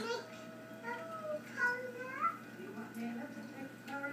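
A small child's high-pitched whiny vocalizing: a few short cries that glide up and down in pitch, played back from an old home video through a TV speaker.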